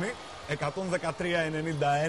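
Speech only: a man's voice talking, the Greek TV commentary, after a brief lull at the start.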